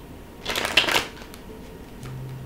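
A deck of tarot cards being shuffled: one short, dense burst of card rustle about half a second in, lasting just over half a second.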